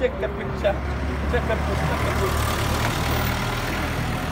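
A motor vehicle engine running with a steady low hum, a little louder from about halfway through, under faint scattered voices.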